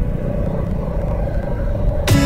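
A motorcycle riding along a road, heard from the bike itself: a steady low rumble of engine and road noise.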